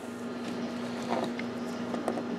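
Steady low hum with a few faint clicks from gloved hands handling a plastic ink cartridge and chip resetter.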